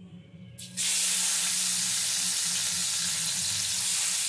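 Steamed mushroom pieces going into hot mustard oil in a non-stick kadai: a loud, steady frying sizzle starts suddenly about a second in and keeps on evenly.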